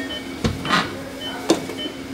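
Hemodialysis machine running with a steady low hum, and a dull knock about half a second in and a sharp click about a second and a half in as the blood lines and the machine are handled.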